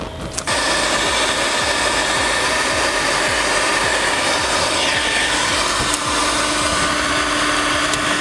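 Heat gun switched on about half a second in and running steadily, heating the damaged lacquer on a wooden veneered car trim panel until it softens enough to be scraped off.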